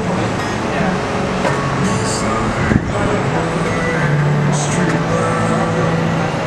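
City traffic noise: a steady wash of road vehicles with a low engine hum that grows stronger in the second half, under indistinct voices. A single sharp knock sounds a little before the middle.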